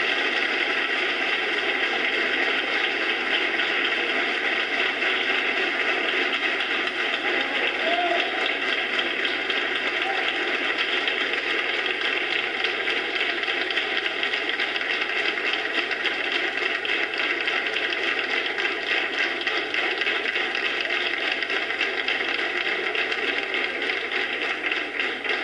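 Audience applauding steadily and unbroken, played back through a screen's speaker.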